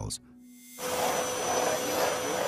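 Canister vacuum cleaner running, starting suddenly about a second in: a steady rushing drone with a constant high whine as its floor head is pushed over a hard floor.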